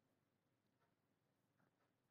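Near silence: digital silence with no audible sound.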